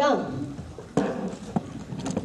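A woman's spoken phrase trails off, then three sharp knocks about half a second apart.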